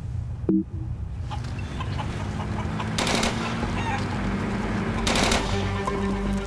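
Film soundtrack of a village street: chickens clucking over a steady low hum. Two short bursts of distant automatic gunfire come about three and five seconds in, and a short tone sounds about half a second in.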